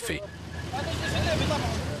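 Street ambience: a steady noise of road traffic, growing a little louder, with faint distant voices.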